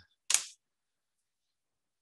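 A single short snap about a third of a second in: the lid of a Bruker DektakXT stylus profilometer being shut as a scan starts.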